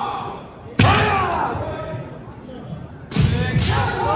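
Kendo fencers attacking. About a second in comes a sudden sharp impact of bamboo shinai strikes and stamping on the wooden floor, followed by long kiai shouts. Another cluster of impacts and shouts comes near the end.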